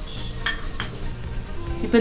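Wooden spatula stirring and scraping fried onions in a nonstick pan as they sizzle softly, mixing in freshly ground pepper masala powder, with a few light scrapes against the pan.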